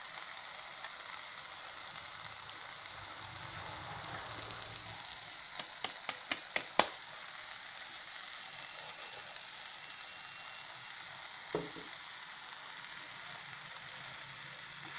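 Chopped cluster beans frying in oil in a pan with a steady, low sizzle. About halfway through comes a quick run of six sharp taps, the last the loudest, and a single knock follows near the end.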